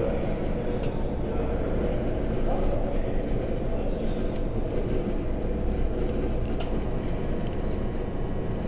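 Steady background noise of a room with a low, indistinct murmur and no clear words. A short, high electronic beep comes near the end.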